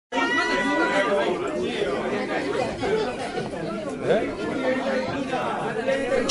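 Crowd chatter in a small bar: several people talking at once between songs, with no music playing.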